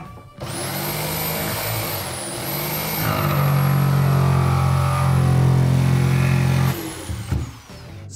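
Corded jigsaw starting up with a rising high whine and cutting a hole through a wooden floor from a drilled start hole. It gets louder about three seconds in as the blade works through, and stops near the end.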